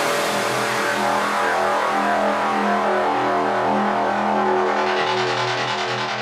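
Psytrance breakdown: layered synthesizer tones held steady with no kick drum, a hissing high layer thinning out near the end.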